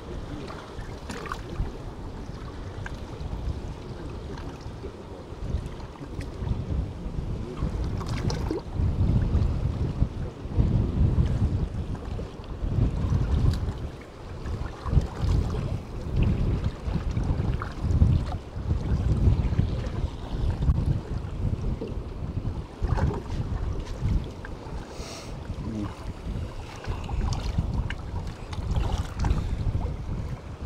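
Wind buffeting the microphone in uneven gusts, growing stronger about a third of the way in, over the wash of choppy sea water.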